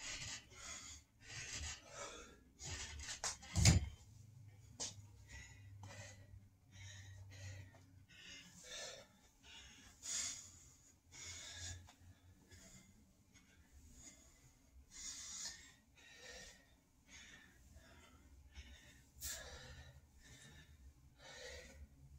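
A man breathing hard and audibly from exertion during pull-ups and squats, with a heavy breath about every second. A single sharp thump about four seconds in is the loudest sound.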